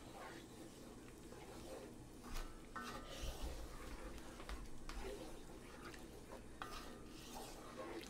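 Wooden spoon stirring thick crushed-tomato sauce in a metal pot: faint, steady wet stirring with a few soft knocks and scrapes of the spoon against the pot.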